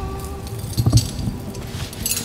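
Background film score with sustained held tones, and a brief clinking jangle about a second in.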